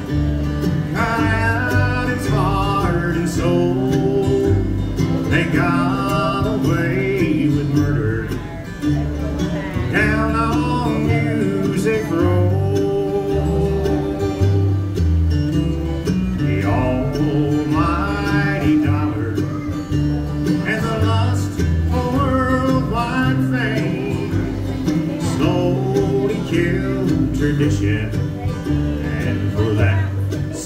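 Live bluegrass band playing: mandolin, upright bass, acoustic guitar and banjo, with a steady bass line under the melody. A vocal line is sung in phrases of a few seconds.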